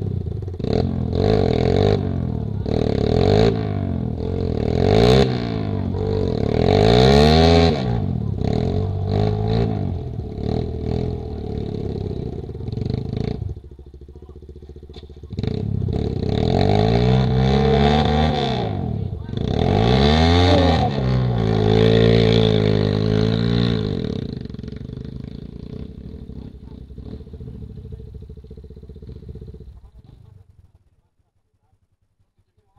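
Trail motorcycle engines revving up and down again and again as the bikes fight for grip in deep mud ruts. There is a short lull about halfway, then more revving that fades away over the last few seconds.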